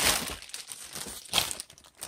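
Clear plastic packing bag crinkling as a power cable wrapped in it is pulled from a cardboard box, with a short sharper crackle a little past halfway.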